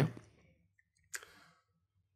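A man's short intake of breath close to the microphone about a second in, during a pause in his talk, just after the tail of a spoken word fades out.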